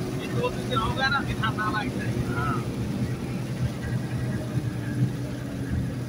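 Vehicle engine and road noise heard from inside the cab while driving on a wet road, a steady low drone. Faint speech comes through in the first two or three seconds.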